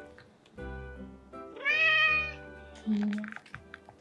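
A grey-and-white domestic cat meows once: a single call just under a second long, rising in pitch and then easing off, over background music.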